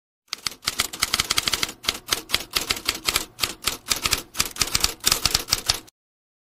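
Typewriter keystroke sound effect: rapid clicks, several a second in uneven runs, starting a moment in and cutting off suddenly near the end.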